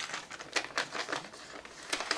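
Guitar string packet crinkling in the hands as the high E string is pulled out of it: a run of irregular light crackles.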